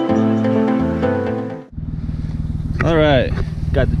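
Background music for the first second and a half, then it cuts out abruptly and a car engine is heard running steadily, with a man starting to talk over it near the end.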